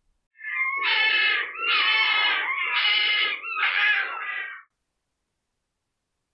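Red fox calling: four drawn-out, wavering cat-like cries of about a second each, run close together, then stopping.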